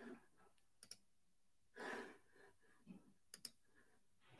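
Near silence with faint computer mouse clicks: a quick double click about a second in and another near the end, with a soft breath between them.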